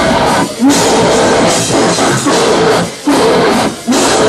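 Death metal band playing live: distorted guitars and drums at full volume, in a stop-start riff. The whole band cuts out for split-second breaks about half a second in, at three seconds and again near the end.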